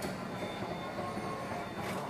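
A MetraLabs mobile guide robot driving along a hard corridor floor, a steady rolling and motor rumble. There is a sharp click at the start and another near the end.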